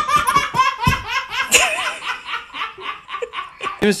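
A toddler laughing hard: a long run of quick, high-pitched bursts of laughter, several a second.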